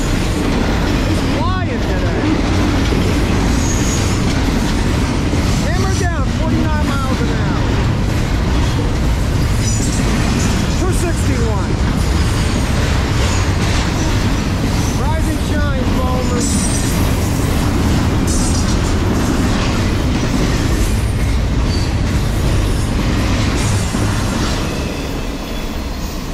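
Double-stack container train's well cars rolling past at close range, a steady loud rumble and rattle of wheels on rail. Brief curving wheel squeals come through a few times, and the sound eases near the end as the last cars pass.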